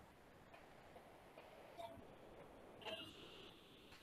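Near silence: quiet room tone, with two faint short sounds about two and three seconds in.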